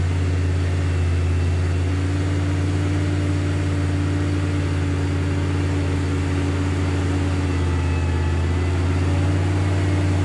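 A Nissan 4x4's engine running steadily at a constant speed, a low, even drone with no revving.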